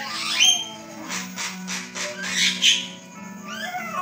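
Javan myna calling: rising whistled notes about half a second in and again near the end, with a run of harsh, clicking chatter between them, over background music.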